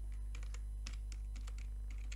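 Computer keyboard being typed on: a string of separate, quick keystrokes over a steady low hum.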